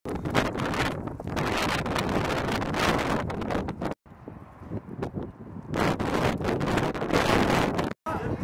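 Wind buffeting the camera microphone outdoors, a loud, gusty rumble. It breaks off at a cut about halfway through, stays quieter for a second or two, then comes back as strong.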